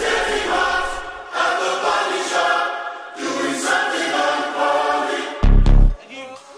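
Pop song intro: stacked, choir-like vocal harmonies sing a slow phrase. Near the end a loud, deep, bass-boosted hit comes in as the beat drops.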